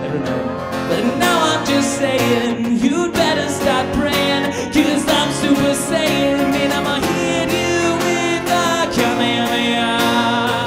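Live band music: an acoustic guitar strummed together with an electric guitar, with a voice singing over them.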